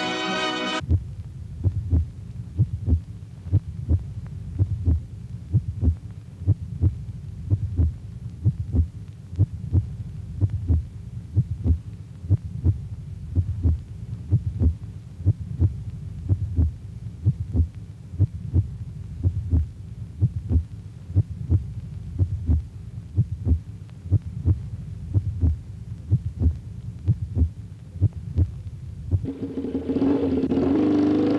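A heartbeat-like pulse on a film soundtrack: low thumps repeating steadily about twice a second. It replaces orchestral music that cuts off just under a second in. Near the end a louder, rising sound comes in.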